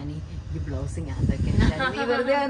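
Women's voices in conversation, breathy and hissy, with laughter near the end and a low bump about one and a half seconds in.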